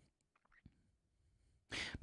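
Near silence with a faint mouth click, then a short breathy sound from a man at the microphone just before he starts speaking near the end.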